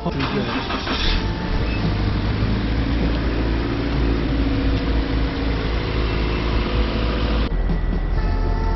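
Toyota 86's 2.0-litre flat-four engine running after being started for a used-car check, a steady engine noise with a strong low hum. The sound changes suddenly near the end.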